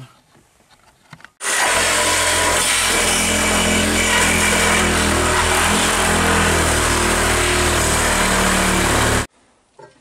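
Power cutting tool running steadily as it cuts through a car's sheet-metal quarter panel. The sound starts abruptly about a second and a half in and cuts off shortly before the end.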